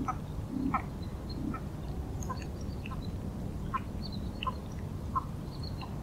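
Ruff (Calidris pugnax) calling: a series of short, clipped notes about every 0.7 seconds, with a couple of low notes in the first second and a half, over a steady low background rumble.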